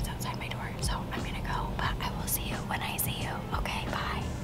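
A woman talking softly, close to a whisper, over a faint steady low hum.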